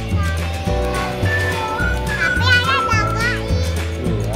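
Music with a steady bass beat, and a child's high voice heard briefly past the middle.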